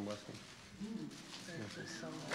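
Quiet human voices, a few short utterances whose pitch rises and falls.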